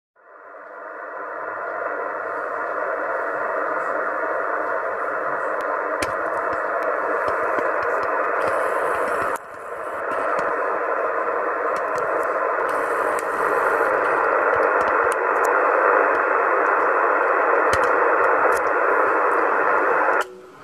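Yaesu FT-450 HF transceiver receiving in upper sideband on CB channel 27 (27.275 MHz): a steady hiss of band noise and static from its speaker, with a few faint crackles. It fades in at the start and dips briefly about nine seconds in.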